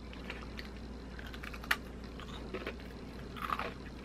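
Crunching and chewing of a thin, crisp Lotte waffle cookie: faint, irregular crunches, with one sharper crack a little before halfway and a few more near the end.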